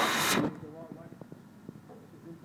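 A cricket bat held against a spinning cloth buffing wheel, a loud rushing noise that cuts off suddenly about half a second in. Then faint distant voices with a few light clicks.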